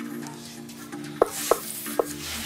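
Dramatic background score: a low sustained drone, joined about halfway through by three sharp, closely spaced knocks.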